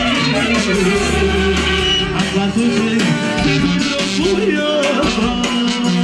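Live band music with a man singing into a microphone, accompanied by trumpet.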